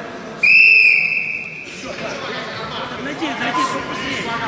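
Referee's whistle: one loud, steady blast of a little over a second, about half a second in, stopping the wrestling action.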